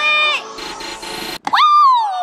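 Edited-in comic sound effects, not a hammer impact: a high voice-like note, then a whoosh rising in pitch that cuts off suddenly about a second and a half in, then a long voice-like tone gliding down in pitch.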